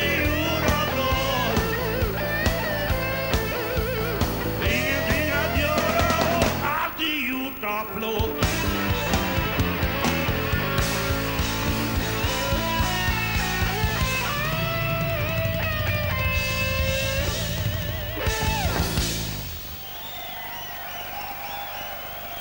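Live rock band playing: electric guitar, drums and cymbals, with a man singing. The song breaks off near the end, leaving a quieter stretch.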